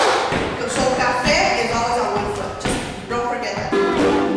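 Voices singing over a taiko drum, with several sharp drum hits and thuds among the singing.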